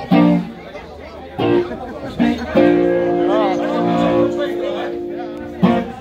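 Electric guitar through an amplifier: a few struck notes, then a chord held for about three seconds with one note bent up and down above it.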